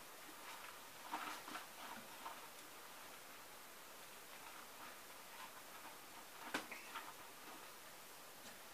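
Quiet dishwashing: a sponge scrubbing silverware over a stainless-steel sink, with faint rubbing sounds and one sharp light clink of metal about six and a half seconds in.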